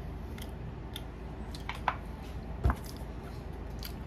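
A few light clicks and one sharper knock about two-thirds of the way through, from a clear plastic container being handled, over a steady low hum.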